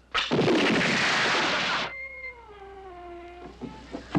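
A sudden loud blast, its noise lasting nearly two seconds before cutting off abruptly, then a long wailing cry that falls slightly in pitch.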